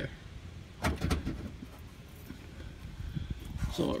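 Handling noise from moving about under a car: a few brief clicks and rustles about a second in, then a faint low rumble.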